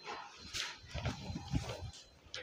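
Silk saree being gathered and pulled off a counter by hand: cloth rustling, with irregular soft thumps of hands and fabric on the tabletop.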